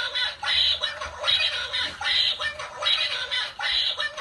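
Battery-powered dancing plush duck toy quacking in a steady rhythm, about two squawky quacks a second.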